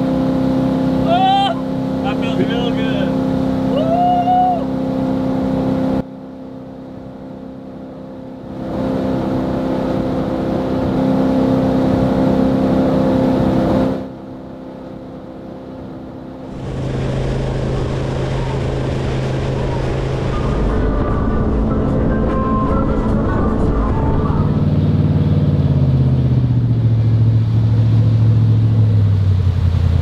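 Jet boat engine running steadily at speed, heard from inside the cabin, with a voice calling out briefly in the first few seconds; the engine sound drops away twice. From about halfway through, music with a bass line stepping downward takes over.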